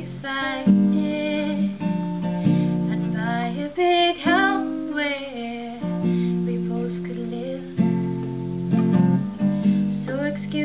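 A girl singing a slow song over strummed acoustic guitar chords.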